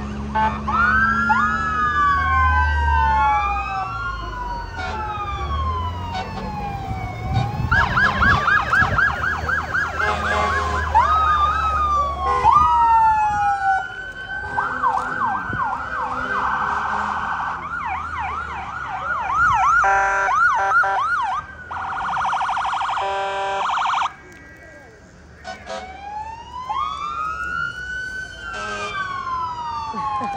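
Sirens of passing emergency vehicles, an ambulance and a fire truck, several at once and overlapping. They cycle between slow rising-and-falling wails and fast yelping warbles, with a steady blaring tone for a couple of seconds near the middle. A heavy engine rumbles low under the sirens for the first dozen seconds as the ambulance drives by.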